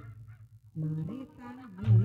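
Jaranan band music: after a short lull, a nasal, wavering melody line comes in, and a loud low beat enters just before the end.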